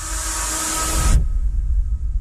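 Trailer sound design: a loud hissing noise swell over a deep bass rumble, the hiss cutting off suddenly about a second in while the low rumble carries on.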